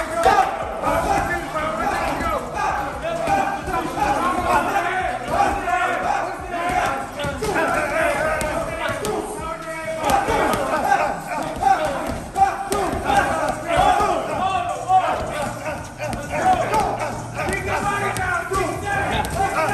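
Gloved punches landing on leather heavy bags in irregular flurries, over a continuous din of overlapping voices and shouts from the boxers working out.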